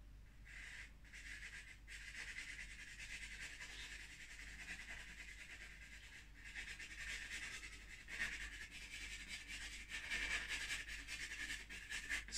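A drawing stick scratching across paper in long, continuous strokes, with a few brief pauses between them.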